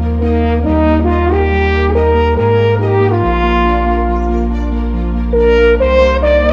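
French horn playing a flowing melody, the notes changing about every half second, over a musical accompaniment with low held bass notes that shift every second or two.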